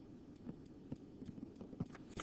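Faint, irregular taps and clicks of a stylus on a tablet screen during handwriting.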